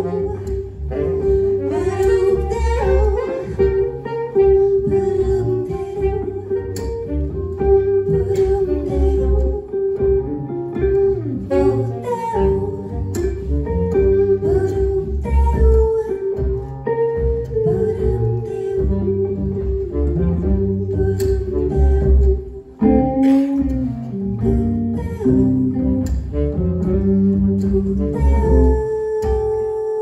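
Live jazz band playing an instrumental passage without vocals, with electric guitar to the fore over upright bass and drums.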